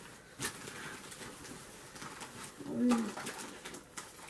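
A short, low hummed murmur from a person, like an 'mm' or 'ooh', about three seconds in, among a few faint clicks.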